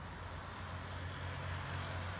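Motorcycle engines running as riders pass along a highway, over steady traffic noise, getting a little louder as a motorcycle comes close near the end.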